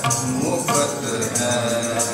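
Sikh kirtan music: two harmoniums holding sustained reedy chords with tabla playing beneath them, the harmony shifting a little under a second in.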